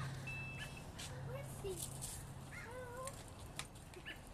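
A steady low hum that stops about two and a half seconds in, with a single short high beep shortly after the start, and faint distant voices.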